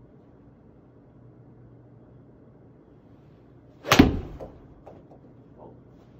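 Golf iron striking a ball off a hitting mat in an indoor simulator bay: one sharp, loud impact about four seconds in with a short low after-ring, then a few faint knocks.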